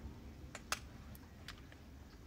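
A few faint, sharp clicks, four spread over about a second, over a low background hum.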